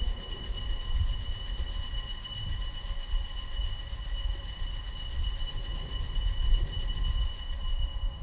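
Altar bells shaken continuously in a high, shimmering ring, marking the elevation of the consecrated host at Mass. The ringing cuts off abruptly near the end, over a low steady rumble.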